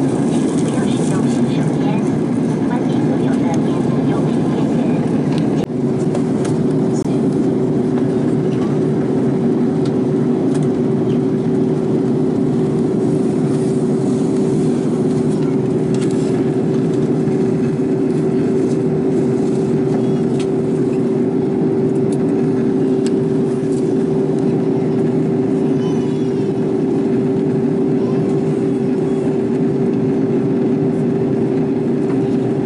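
Steady noise of an airliner in flight, heard inside the cabin: the constant sound of air and engines at altitude. About six seconds in the sound changes abruptly, and after that a steady hum runs along with it.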